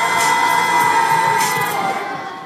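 Children's choir singing, holding one long note that fades away near the end.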